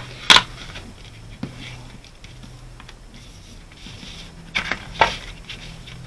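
Paper corner-rounder punch snapping once, a single sharp click soon after the start as it cuts a rounded corner on the paper. A few softer clicks follow near the end.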